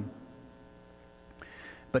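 Steady electrical mains hum from the sound system during a short pause in a man's speech, with a brief faint hiss near the end just before he speaks again.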